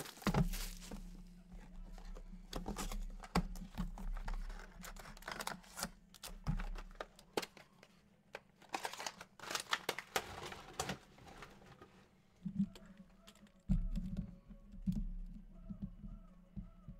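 Plastic wrap crinkling and tearing as a sealed trading-card box is unwrapped and handled, with irregular rustles and clicks of cardboard and wrapper.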